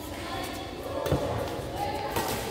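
A single low thud about a second in, typical of a badminton player's shoe landing hard on the court during a rally, with voices in the background.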